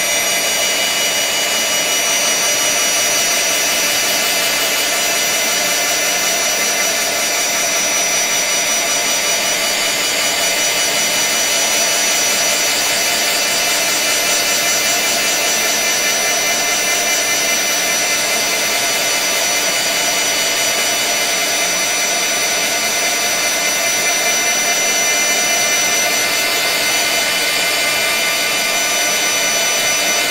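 Handheld heat gun running steadily, its fan blowing an even rush of air with a faint high whine, as it heats a polymer clay piece to crackle its surface.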